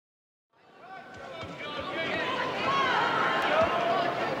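Boxing arena crowd: many voices shouting and calling at once. The sound fades in from silence about half a second in and grows louder.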